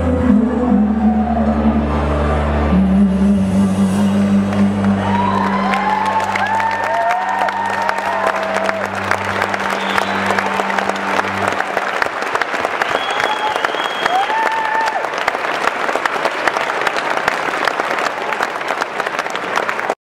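A live song ends on a long held chord as audience applause and cheering swell in about four seconds in. The music stops around twelve seconds in, leaving steady clapping with scattered cheers that cuts off suddenly.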